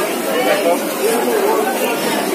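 Voices of people chatting in a busy market, over a steady background murmur.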